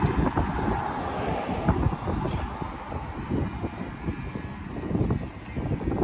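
Wind buffeting the microphone in uneven gusts, over the sound of passing car traffic.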